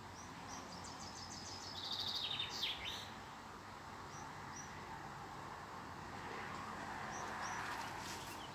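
Songbirds calling: a short high chirp repeated again and again, with a louder, rapid trilling phrase about two seconds in, over a faint steady background noise.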